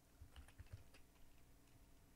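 Faint typing on a computer keyboard: a quick run of soft key clicks that thins out after about a second.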